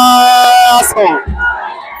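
A man close to the microphone chanting loudly, holding one long note at a steady pitch for nearly a second, then breaking off to quieter crowd voices in the stands.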